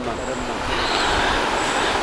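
A steady rushing noise with no pitch or rhythm, swelling slightly in the first second.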